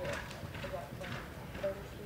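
Horse loping on arena dirt, its hoofbeats falling about twice a second, with a voice talking faintly over them.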